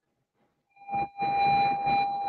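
Dead silence for most of the first second. Then a short burst of sound, followed by a steady high-pitched tone over a hiss.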